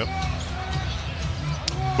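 A basketball being dribbled on a hardwood arena court, with a sharp bounce about a second and a half in, over steady arena background noise.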